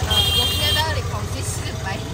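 Auto-rickshaw engine running with a steady low rumble, heard from inside the open passenger cabin while it drives through traffic. A short, high steady tone sounds for under a second near the start.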